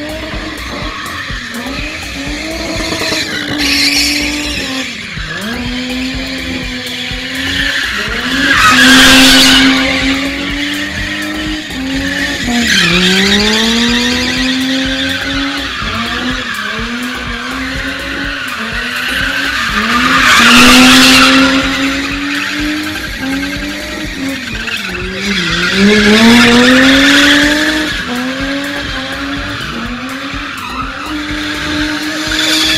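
Car engine held at high revs while the car spins, the revs dipping and climbing again several times, with tyres skidding and squealing on tarmac; the tyre noise swells loudly three times, about 9, 21 and 26 seconds in.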